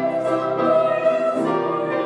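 A hymn being sung, slow and with long held notes, over instrumental accompaniment.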